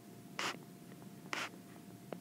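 Handwriting strokes: two short scratchy strokes about a second apart, with faint light taps between them.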